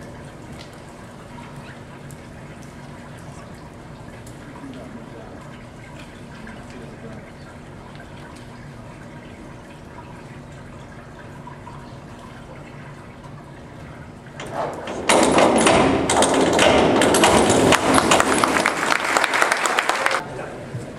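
Quiet, echoing pool-hall background, then about 15 seconds in, after a short rise, loud applause and cheering from the spectators breaks out.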